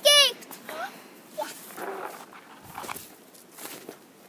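A girl's short high-pitched squeal, falling in pitch, right at the start, then quieter rustling with a few brief faint high vocal sounds.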